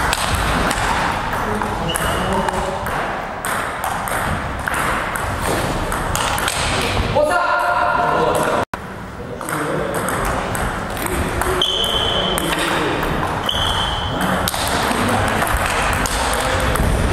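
Table tennis balls clicking off bats and tables in quick, irregular strokes, with rallies going on at more than one table in a hall. About halfway through, the clicking thins while a voice is heard, the sound cuts out for an instant, and then play resumes.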